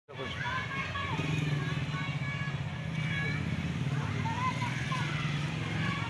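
An engine running steadily at idle, a low even rumble, with people's voices in the background.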